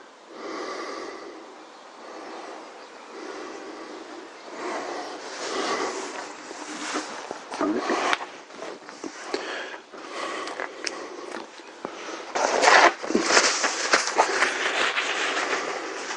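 Handling noises from work at the motorcycle's handlebar: rustling with scattered light knocks and clicks, louder and busier over the last few seconds.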